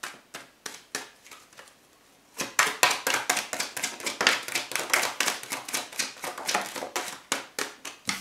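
A tarot deck being shuffled by hand: a few soft card taps, then from about two and a half seconds in a long run of quick, crisp card clicks.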